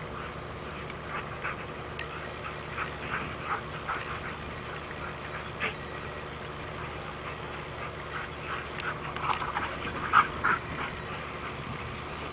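Two Rhodesian Ridgebacks play-wrestling, giving short scattered whines and play noises in two flurries, the loudest about ten seconds in, with a quieter spell between.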